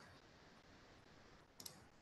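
Near silence: faint room tone, with one short, faint click about one and a half seconds in.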